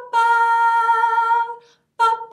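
A woman singing the song's hook on 'ba' syllables: a short note right at the start, then one long held note that falls slightly in pitch, tracing the melody's downward contour.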